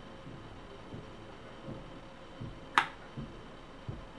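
A single sharp click about three-quarters of the way in, over faint steady hiss with a few soft low thumps.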